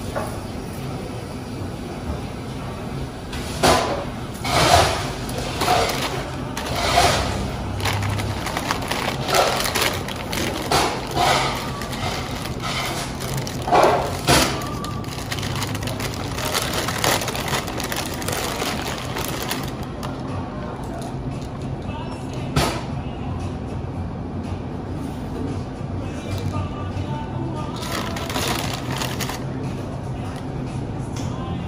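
Plastic shopping bag and paper bag crinkling and rustling in short bursts as they are handled and opened, most of it in the first half, with a single sharp crackle later and a few more near the end. Music plays steadily in the background.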